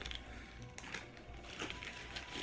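Quiet crinkling and rustling of a paper fast-food burger wrapper being handled, a few light crackles, over faint background music.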